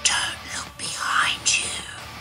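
Eerie whispering voices in four short, breathy bursts, a spooky sound effect.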